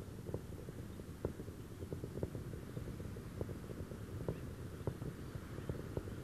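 Space Shuttle ascending under its solid rocket boosters and main engines, heard from far away: a low, steady rumble with scattered sharp crackles.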